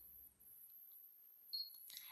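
Near silence, then one short high-pitched beep from the embroidery machine's touchscreen control panel about one and a half seconds in.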